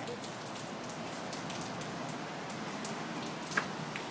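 Steady rain falling on pavement: an even hiss with faint scattered ticks of drops.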